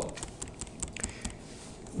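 A run of light, irregular clicks from the computer's controls as the on-screen document is scrolled down.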